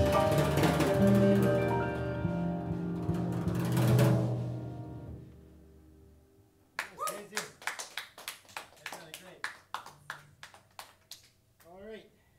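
A jazz combo of grand piano, electric guitar, electric bass and drum kit plays a last swelling chord about four seconds in that rings out and dies away. A few seconds later comes thin, scattered applause from a small audience, fading out near the end.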